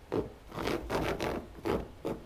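A puppy's paws scratching and digging at a woven rug in a quick run of rasping strokes, the circling-and-digging of a dog trying to make itself a bed.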